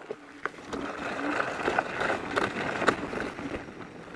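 Electric scooter rolling off over dry dirt and gravel, its tyres crunching with scattered small clicks of grit. The sound grows over the first second, then fades as it moves away.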